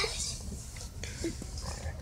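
Quiet, stifled laughter from people inside a car.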